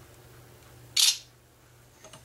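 Smartphone camera shutter sound, played once by the LG G2X's camera app about a second in as a picture is taken: a single short, sharp click.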